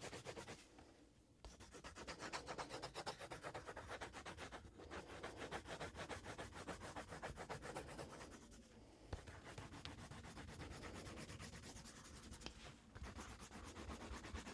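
A drawing tool scratching on paper in quick back-and-forth shading strokes, several a second, with short pauses between runs of strokes.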